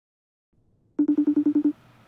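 Laptop video-call ringing tone: a rapid trill of about eight short pulses on one low pitch, starting about a second in and lasting under a second.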